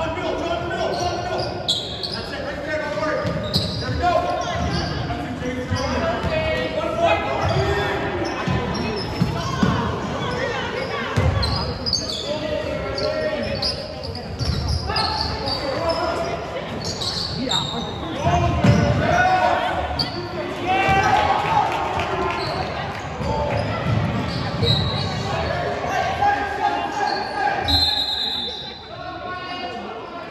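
Basketball game on a gym's hardwood court: the ball dribbling and bouncing on the floor in repeated thuds, among the shouts of players and spectators, echoing in the large hall.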